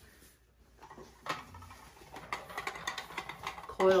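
Boomerang wheel, a cylinder with a hex nut on an elastic band inside, rolling across a hardwood floor, giving a string of light, irregular clicks from about a second in.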